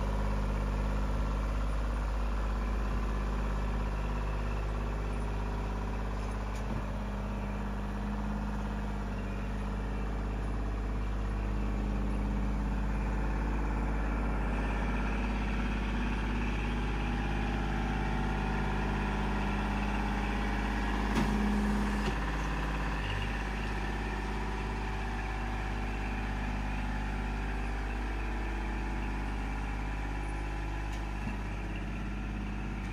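Kubota L2501 compact tractor's three-cylinder diesel engine running steadily while the front loader works loam.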